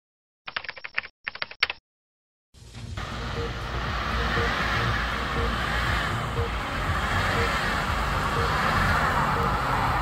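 Two quick bursts of rapid clicking, like typing, then from about two and a half seconds a steady low rumble and rush of vehicle noise on a snowy road, with a faint short beep about once a second.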